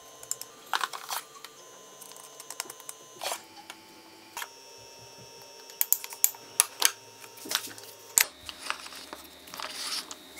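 Metal spoon clinking and scraping on an aluminium moka pot while ground coffee is spooned in: scattered sharp clicks and taps, clustered about six to seven seconds in.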